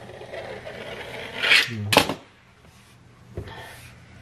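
A small yellow-handled knife cutting through a sheet of fondant on a plastic-covered counter, a scraping rasp about a second and a half in that ends with a sharp tap of the blade, then quiet handling.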